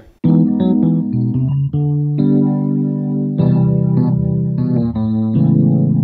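Smooth seventh chords played on a digital keyboard, moving through A-flat minor seven, G major seven, C major seven and C-sharp minor seven. Each chord is held for about one to two seconds before the next.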